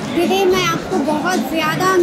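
Speech only: a woman talking.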